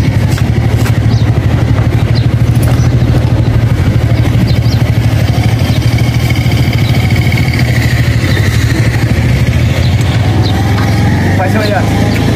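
Small motor scooter engine running steadily at low revs as the scooter is ridden slowly down a steep ramp. A voice comes in near the end.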